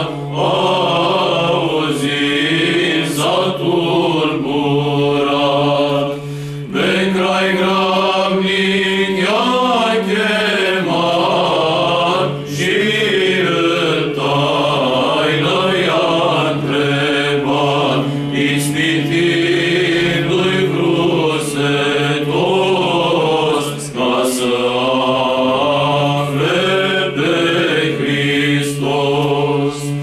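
Men's choir singing a Romanian Christmas carol (colindă) a cappella, a low drone held under the melody. The drone steps up about seven seconds in and drops back about four seconds later, and the singing breaks briefly for breath a few times.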